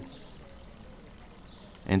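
Faint, steady hiss of background noise. A man's voice-over starts again near the end.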